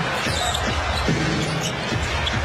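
Basketball being dribbled on a hardwood court during live play, over steady arena crowd noise.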